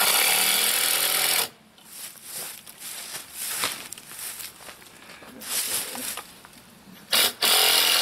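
Power drill driving a screw into very hard pallet wood: the motor runs for about a second and a half and stops, with quieter knocks and handling of the boards in between, then runs again near the end. The screw will not go in: the wood is like iron.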